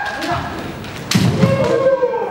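Kendo fencers' kiai shouts, long drawn-out cries, with the sharp impact of an attack about a second in: a bamboo shinai strike and the thud of a stamping foot on the wooden floor, followed at once by another long shout.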